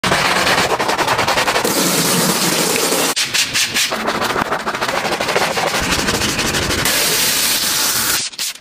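Stiff detailing brush scrubbing thick foam on a car's grille and alloy wheel in rapid rasping strokes, broken by stretches of steady hiss.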